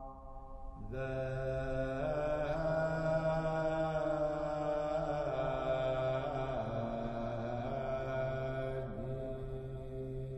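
Slow sacred background music: long held chant-like notes over a steady low drone, moving to a new chord about a second in and shifting a few times after that.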